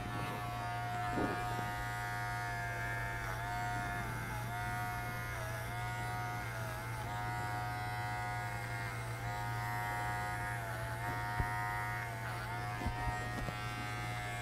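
Wahl Figura cordless lithium-ion horse clipper running with its five-in-one blade while clipping the coarse hair of a horse's fetlock: a steady electric buzz whose pitch dips briefly every second or so as the blade passes through the hair.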